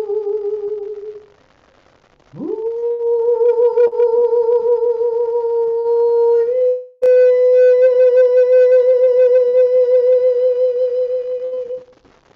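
A woman singing a Tao song in long held notes with vibrato. One note fades out about a second in, then after a breath pause she slides up into a higher note and holds it, and after a short break just past halfway holds a slightly higher note until it stops near the end.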